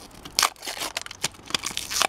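Thin plastic wrapper crinkling and tearing as it is peeled off an LOL Surprise ball, in irregular crackles with a few sharp clicks, the loudest about half a second in.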